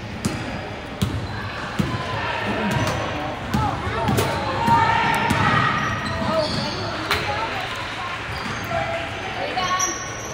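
Basketball dribbled on a hardwood gym floor, bouncing at an uneven pace, with voices calling out in the hall.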